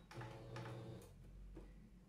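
Domestic sewing machine stitching faintly and slowly, stopping about a second in.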